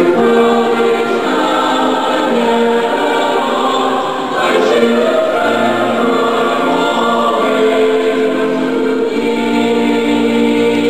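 A choir singing slow, held chords, the notes changing about once a second, with a brief pause a little past the middle.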